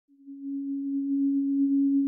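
A single steady pure electronic tone, like a held synthesizer note, fading in over the first half second and then sustained at one pitch as the song's intro begins.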